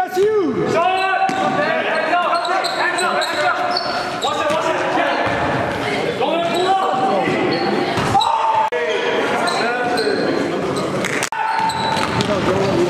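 Live game sound in a gymnasium: a basketball being dribbled on a hardwood court, sneakers squeaking, and players' voices ringing in the large hall. The sound drops out briefly twice in the second half.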